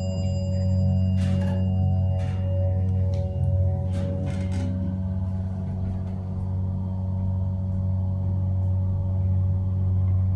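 The hydraulic pump motor of a Dover Oildraulic elevator hums steadily as the car travels, heard from inside the cab. An elevator chime rings just before the start and fades out over the first three seconds or so, and a few light clicks sound in the first half.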